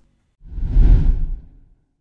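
A single editing whoosh sound effect marking the cut to the next numbered item. It swells up and fades away over about a second, heaviest in the low end.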